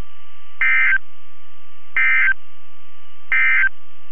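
Emergency Alert System end-of-message data bursts on NOAA Weather Radio: three short bursts of buzzy digital tones about 1.4 seconds apart, signalling the end of the tornado watch alert. A faint steady tone lies under them.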